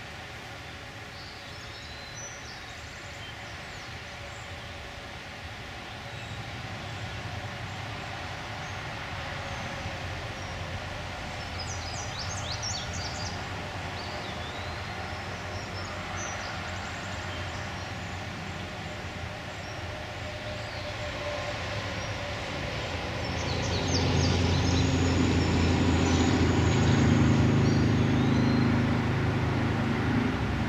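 Steady low engine-like rumble that swells much louder over the last several seconds, with a few brief bird chirps above it.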